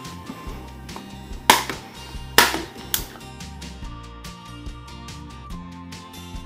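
Plastic clips of an external hard drive's enclosure snapping loose as the case is pried open with a screwdriver: three sharp snaps, one about a second and a half in and two close together a second later, over steady background music.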